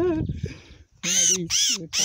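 A sayaca tanager held in the hand giving harsh distress calls: two short squawks close together about a second in.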